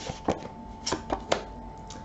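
A deck of tarot cards handled in the hand: about five short, sharp snaps of card edges as cards are slid and flicked out of the deck to draw one.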